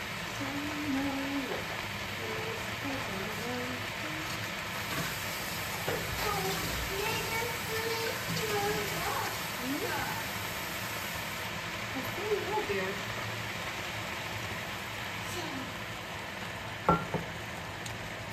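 Meat and vegetables sizzling steadily in a hot enamelled pan on an induction hob, with a little water just added. Faint voices in the background, and a sharp click near the end.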